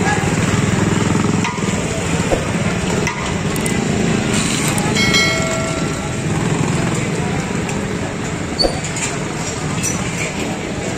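Busy street traffic: motorcycle and car engines running steadily, mixed with crowd voices, and a short horn-like tone about five seconds in.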